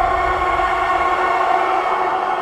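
Horror sound-effect sting: a loud, dissonant wail of many held tones sounding together, swelling slightly and then starting to fade near the end.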